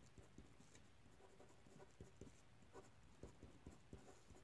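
Faint scratchy strokes of a marker pen tip as a word is hand-lettered, many short strokes in an uneven rhythm.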